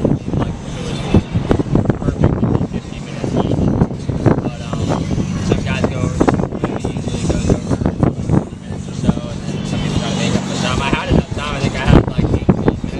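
Men talking in conversation, over a steady low hum.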